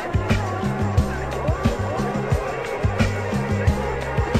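Electronic music from a DJ mix: a drum beat over a low, sustained bass line, with melodic synth lines above.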